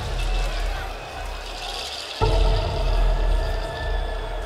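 Dark, heavy opening soundtrack of a hardstyle show in an arena: deep rumbling low swells under a held higher tone, with a sudden loud surge a little over two seconds in.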